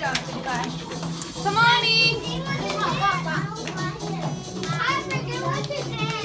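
Young children's voices chattering and calling out over each other, with music playing underneath. One louder high-pitched shout comes about two seconds in.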